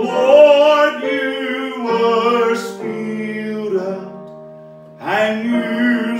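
A man singing a slow song, accompanied by a digital piano. About four seconds in, his voice stops and the held piano chords fade. A new phrase comes in about a second later.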